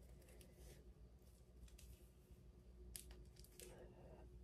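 Near silence with faint, scattered rustles and light clicks of fingers and long nails working the braids and lace of a braided wig at the hairline, the clearest about three seconds in.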